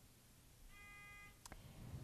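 Quiz-show buzzer system giving a short, steady electronic beep of well under a second as a contestant buzzes in, followed by a single click.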